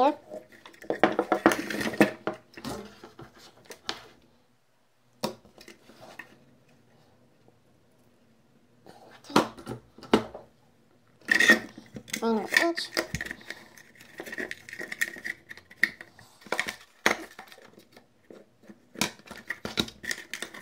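Hands handling small parts on a table: wires, the plastic vacuum-cleaner housing and switch. The sound is irregular clicks, taps and light plastic clatter, with a quiet pause in the middle and busier handling in the second half.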